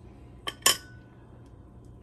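A metal kitchen utensil clinking against a dish twice in quick succession about half a second in, the second clink louder with a brief ring.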